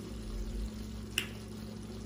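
A pot of conch meat sauce simmering faintly on the stove under a steady low hum, with a single short, sharp click a little over a second in.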